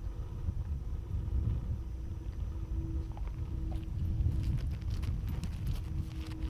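Wind buffeting a camera microphone outdoors, heard as an uneven low rumble, with a faint steady hum. A run of light crackling clicks comes in over the last second and a half.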